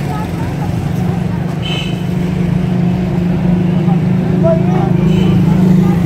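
Street traffic: a steady low engine hum from idling vehicles, with brief snatches of voices in the background.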